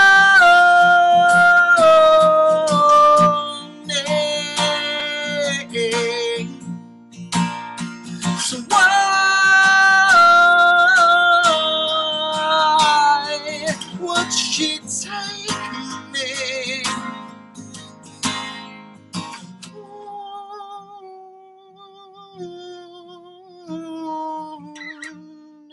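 A man singing long held notes in a stepwise falling line over a strummed acoustic guitar. The strumming stops about twenty seconds in, leaving a quieter sung line.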